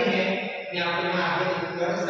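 Voices reciting Arabic letter names in a drawn-out, sing-song chant, each syllable held long, with a brief dip about half a second in.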